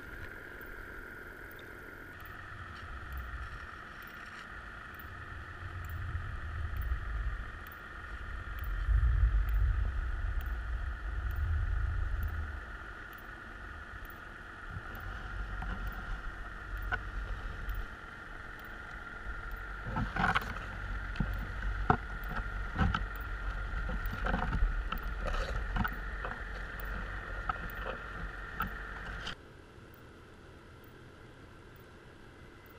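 Underwater sound from a camera on creel gear: a steady drone throughout, with surges of low rumbling water movement in the first half and a run of sharp knocks in the second half as the creels and their frames move and touch. The sound cuts off suddenly just before the end.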